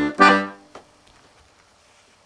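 Five-row chromatic button accordion playing the two closing chords of a jenkka, the last one dying away about half a second in. A single faint click follows, then quiet room tone.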